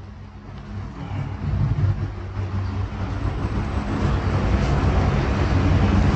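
A low, noisy rumble that grows steadily louder.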